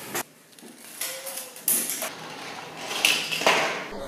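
A small 3D-printed plastic cart rattling and clattering down a roller coaster track made of craft sticks. The clatter starts about a second in and grows loudest near the end.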